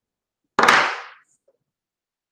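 A single sudden noise close to the microphone about half a second in, starting sharply and fading within about half a second.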